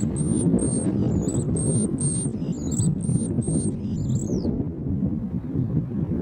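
Wind buffeting the microphone with an uneven low rumble. Over it, a quick run of short, thin, very high-pitched chirps, some bending in pitch, stops about four and a half seconds in.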